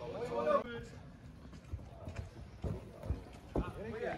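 A short shout, then about five scattered dull thuds over the next two seconds from play in a krachtbal match on grass.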